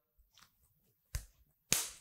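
Mostly quiet, with a single sharp click about a second in, then a short hiss just before speech resumes.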